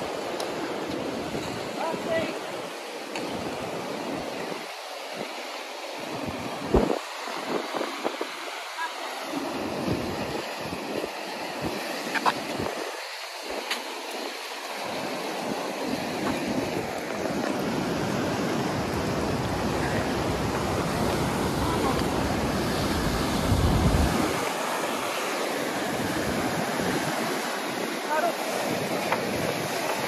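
Whitewater rushing down a concrete slalom channel, a continuous noise of rapids, with wind buffeting the microphone and adding a low rumble through the second half. A few brief knocks come about 7 and 12 seconds in.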